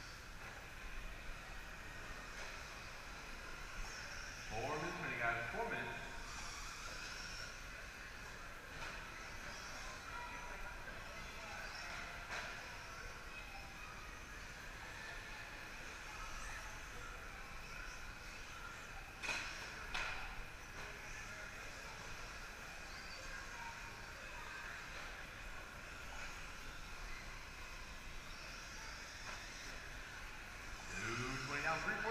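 Brushless electric radio-control short-course trucks running laps on an indoor dirt track, a steady high motor whine with tyre noise. A voice is heard briefly about five seconds in, and there is a sharp knock a little before the twenty-second mark.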